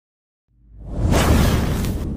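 Whoosh sound effect of a fiery logo intro: after half a second of silence, a loud whoosh with a low rumble swells up and is loudest near the end.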